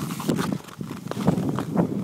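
Ice skate blades striking and scraping on natural lake ice as the skater strides along, an uneven rhythm of knocks and scrapes several times a second.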